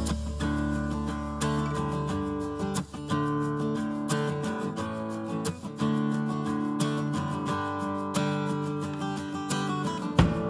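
Background music with guitar: a run of plucked and strummed notes, over a low bass note that fades out in the first few seconds.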